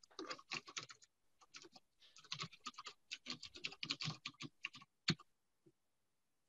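Typing on a computer keyboard in quick runs of keystrokes, with a brief pause about a second in and one last louder keystroke near the end.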